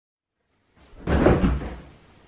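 A person flopping face-down onto a bed: a soft thump of the mattress with a rustle of the duvet, about a second in and lasting under a second.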